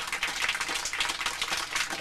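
Audience applause: many hands clapping in a dense, steady crackle.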